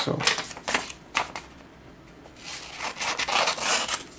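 Scissors cutting glossy paper perfume-sample cards: a few short, crisp snips in the first second or so, then a longer stretch of paper rustling and cutting near the end.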